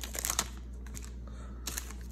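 A trading card pack's wrapper crinkling as the cards are pulled out of the torn pack. A few short crackles come in the first half second, then faint handling over a steady low hum.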